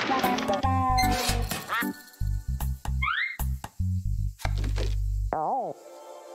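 Cartoon soundtrack music of short low bass notes with comic sound effects: sharp clicks and knocks, a quick rising whistle-like glide about three seconds in, and a wobbling falling slide near the end.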